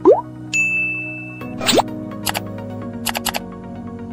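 Background music under cartoon user-interface sound effects for a like-and-subscribe button animation: a rising pop right at the start, a held ding tone about half a second in, a second rising pop, then a quick run of clicks near the end.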